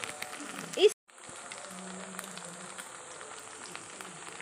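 Onions and spices frying in hot oil in a pot: a steady sizzle with small crackles. A short rising voice-like sound comes just before a second in, then the sound cuts out for a moment before the sizzling resumes.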